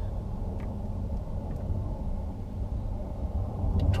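Steady low background rumble, with a few faint clicks.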